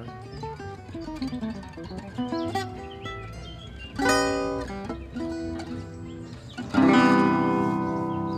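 Acoustic guitar played solo in gypsy jazz style: a falling run of single plucked notes, then struck chords. The loudest chord comes near the end and rings out.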